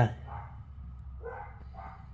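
Dogs barking, going at it in the background: three short barks within two seconds, over a steady low hum.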